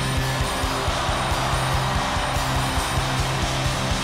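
Live rock band playing a driving dance-rock song on drum kit, bass and electric guitar, with a steady, regular kick-drum beat. A hissing wash of noise swells up in the middle and fades again near the end.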